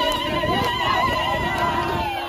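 A woman's high, wavering ululating trill, held for most of the two seconds and falling away near the end, over the voices of a crowd.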